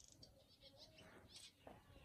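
Near silence with faint bird chirps, short and scattered, over a low outdoor hum.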